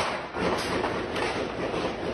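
Street sound from a phone video: a loud, even rushing noise that cuts in suddenly and holds steady, with no single sound standing out.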